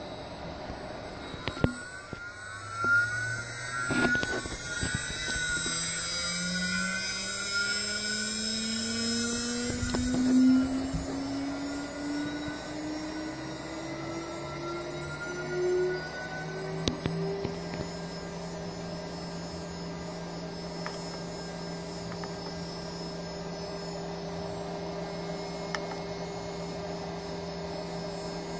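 CNC router spindle driven by a new variable frequency drive, spinning up with a whine whose pitch rises steadily for about fifteen seconds, then holding steady at about 11,500 RPM. A few knocks sound in the first ten seconds.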